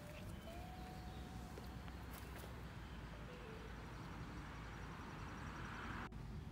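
Faint outdoor garden ambience, with a thin held whistle-like tone for about the first two seconds and a brief fainter one a little later.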